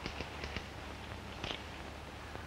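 A few short, sharp clicks and knocks, three or four close together near the start and one more about a second and a half in, over the steady low hum of an old film soundtrack.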